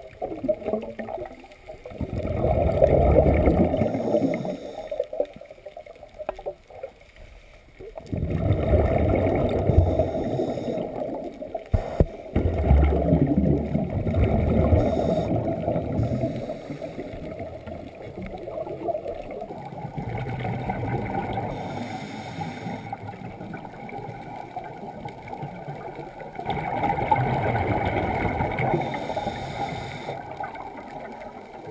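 Underwater, a scuba regulator's exhaled bubbles rush out in bursts a few seconds long, with quieter pauses between them as the diver breathes in.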